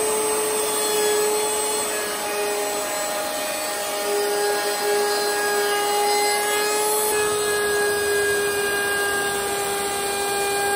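Table-mounted router running steadily at high speed, a bearing-guided roundover bit cutting a rounded step along the edge of a mahogany board as it is fed past.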